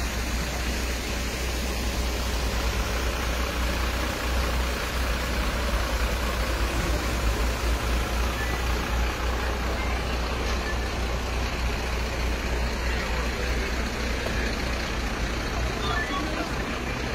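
A vehicle engine running steadily, a continuous low rumble under outdoor background noise, with faint voices.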